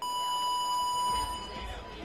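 Electronic start buzzer sounding one long steady beep of almost two seconds, a clean mid-pitched tone that starts suddenly: the signal starting the heat.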